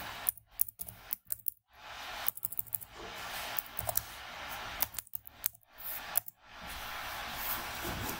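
Keystrokes on a computer keyboard in several short runs of clicks as a terminal command is typed, over a steady hiss.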